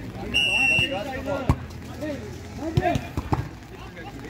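A referee's whistle blown once, a steady high note lasting about half a second, followed about a second later by the sharp thud of the football being kicked to restart play. Players shout around it, and there are a couple of lighter knocks near the end.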